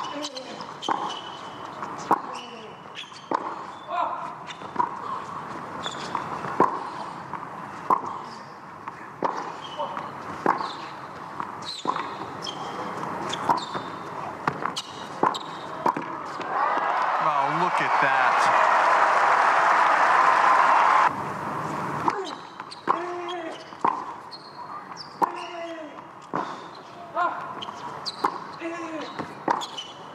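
Tennis rally on a hard court: a ball struck back and forth by racquets about once a second, with short voiced grunts from the players on some shots. A loud burst of crowd noise swells about seventeen seconds in and cuts off suddenly a few seconds later, then the rally's strikes go on.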